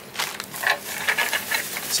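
Foam wrap and plastic packaging rustling and crinkling in irregular bursts as a projector accessory is unwrapped by hand.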